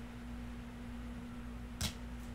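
A card laid down onto other cards on a tabletop, one short swish near the end, over a steady low hum.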